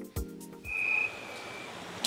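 The end of a short news music sting, cutting off under a second in, then street traffic noise with one high, steady whistle-like tone lasting about a second.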